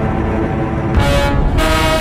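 Dramatic background score: a low rumbling drone, then two short, loud brass blasts in the second half.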